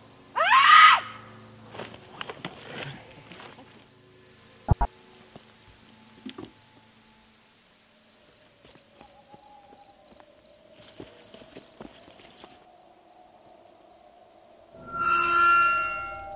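A short, loud, high cry that rises and falls in pitch, about half a second in, followed by faint scattered sounds and a sharp click. Another voice-like cry builds near the end.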